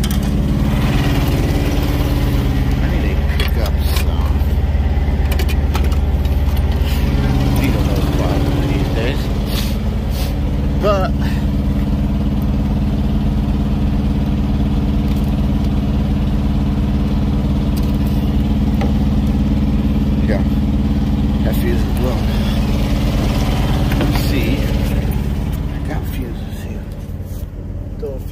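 Truck engine idling steadily, with scattered knocks and rustles from the phone being handled; the engine sound drops somewhat near the end.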